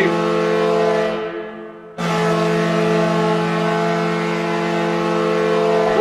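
Recorded ice-hockey arena goal horn sounding for a goal: a long, steady blast that dies away about a second in, then starts again at full strength about two seconds in.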